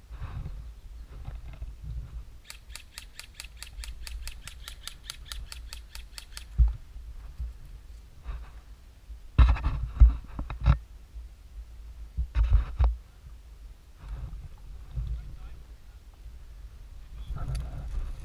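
Airsoft rifle firing short strings of sharp shots: one cluster about halfway through and another a few seconds later. Before them comes about four seconds of fast, even ticking.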